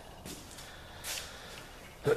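Quiet garage room tone with one short breath about a second in.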